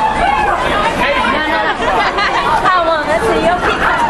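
Several people's voices talking over one another, excited and high-pitched, with crowd chatter behind them in a large hall.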